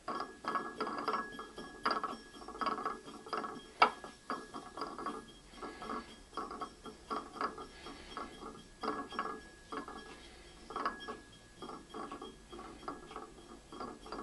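A cast-metal potter's banding wheel pushed round by hand in short repeated turns, its bearing rattling and clicking with each push. About four seconds in there is one sharp click.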